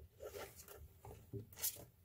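Faint scratching and rustling, with a short sharp scrape about one and a half seconds in.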